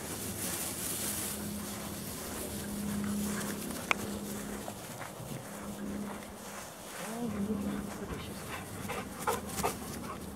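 Several dogs moving about on a dry dirt trail, with a single sharp click about four seconds in and two short louder sounds near the end.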